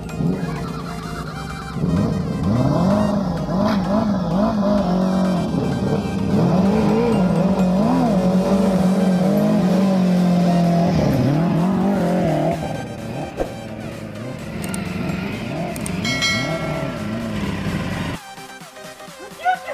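Sport motorcycle engines revving, the pitch climbing and dropping again and again with throttle blips, loudest for several seconds in the first two-thirds and easing off after. Music plays underneath.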